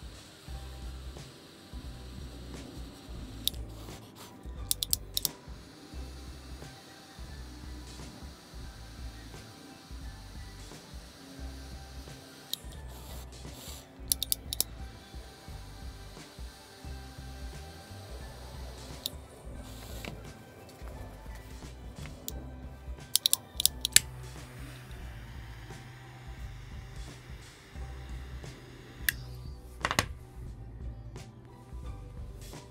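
Ignition clicks of a JetLine Roggo double-jet torch lighter sparking while a cigar is lit: quick bursts of several sharp clicks about five seconds in, again at about fourteen seconds and again around twenty-three to twenty-four seconds. Background music with a steady beat plays throughout.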